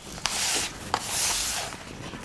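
Handling noise as the boxed flower arrangement is moved under the hands: two soft rubbing rustles, each about half a second long.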